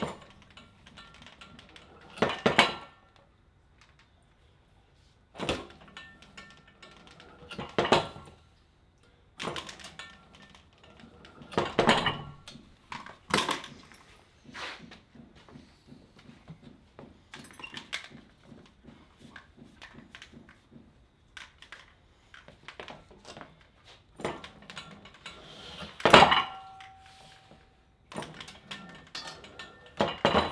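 Loaded weight plates on a pulley rig's loading pin clanking and knocking as the vector wrench handle lifts them and sets them back down, rep after rep. A series of sharp clanks every few seconds, the loudest near the end with a short ringing note after it.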